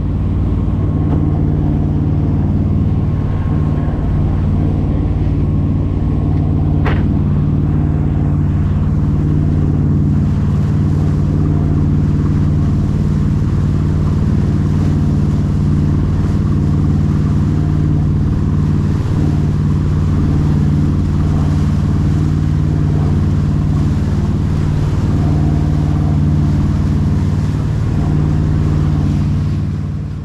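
Twin engines of a Luhrs 290 sportfishing boat running steadily under way at trolling speed, a steady low drone over the rush of the wake. The sound fades in at the start and fades out at the end.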